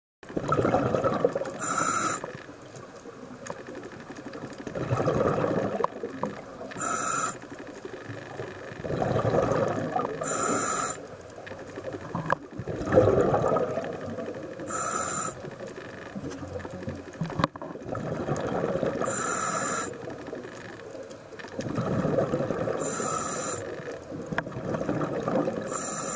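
Scuba diver breathing through a regulator underwater: six breaths about four seconds apart, each a gurgling rush of exhaled bubbles and a short hiss from the regulator.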